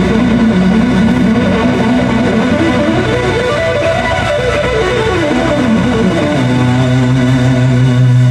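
Live blues-rock band with a lead electric guitar from a Les Paul-style guitar playing quick runs up and down the neck over horns, bass and drums. About six seconds in, the band settles on a long held low chord.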